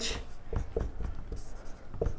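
Marker pen writing on a whiteboard: a series of short, faint, irregular strokes.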